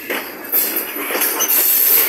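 Covered hopper cars of a freight train rolling past close by: steel wheels running on the rail, loud, with knocks about half a second and a second and a half in and a high wheel squeal.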